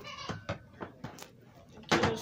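A short drawn-out vocal sound, then a few sharp light clicks and knocks as the plastic posts and string ropes of a toy wrestling ring are handled.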